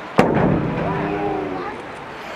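Large ceremonial drum struck once, a heavy boom about a quarter second in that rings on and fades over more than a second.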